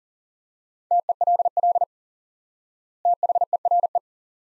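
Two words sent in Morse code at 40 words per minute as a keyed steady single-pitch tone, the first about a second in and the second about three seconds in. The two words are "tell" and "there".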